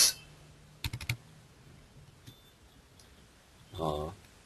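Computer keyboard keystrokes: a quick run of about four clicks about a second in, as a new comment line is typed. A short vocal sound comes just before the end.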